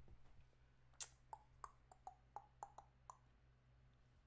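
Buttons on a VoiceLive vocal effects unit being pressed: a quiet run of about nine light clicks over two seconds, starting about a second in, over low room hum.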